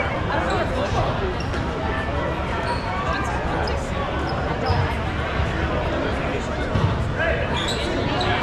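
Dodgeballs bouncing and thudding on a hard gym floor during play, with short sneaker squeaks and players calling out in a large, echoing hall.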